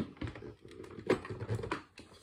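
Irregular light clicks and taps of handling noise, with a louder knock a little over a second in; no vacuum motor running.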